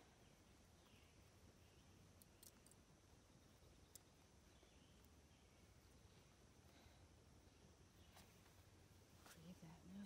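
Near silence, with a few faint clicks from hands handling a snare noose.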